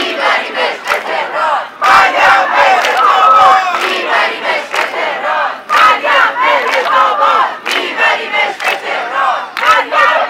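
A crowd of demonstrators shouting slogans together, with hand clapping.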